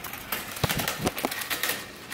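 Cardboard boxes and styrofoam packing being shifted about: light rustling with scattered taps, and a couple of sharper knocks around the middle.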